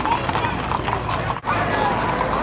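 Horse hooves clip-clopping on an asphalt street as several ridden horses walk past, with voices of people around them. The sound breaks off for an instant about one and a half seconds in.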